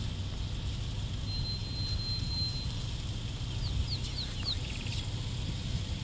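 A small bird whistling over the low steady rumble of a vehicle. First comes one long high note, then about four short falling notes and a brief rapid trill.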